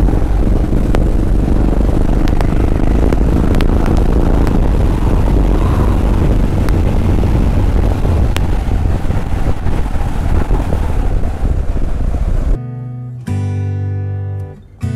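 Motorcycle engine running steadily at cruising speed, with heavy wind noise on a helmet-mounted camera. About twelve and a half seconds in it cuts off suddenly, giving way to strummed acoustic guitar music.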